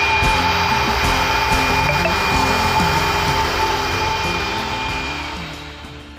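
Canister wet-and-dry vacuum cleaner running steadily with a high motor whine, under background music. Both fade out near the end.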